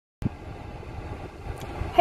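Steady low rumble and hiss of a car's interior, with a short thump just after the start.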